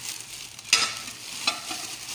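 Thin plastic shopping bag rustling and crinkling as a plate is handled inside it, with a sharp crackle under a second in and a smaller one about a second later.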